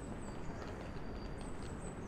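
Pedestrian street ambience: a steady low city rumble with light footstep taps on stone paving and faint thin high-pitched tones.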